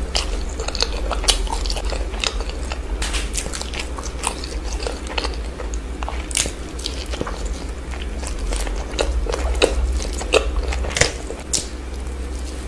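Close-miked eating sounds: biting and chewing a chutney-dipped chicken momo, with irregular wet mouth clicks and smacks. A low steady hum runs underneath.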